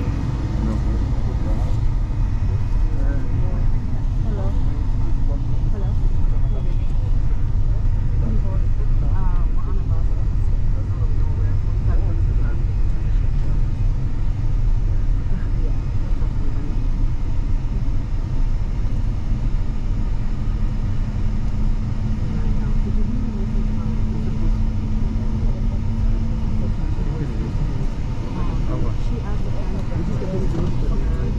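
Steady low rumble of a car driving on an unpaved gravel road, heard from inside the cabin.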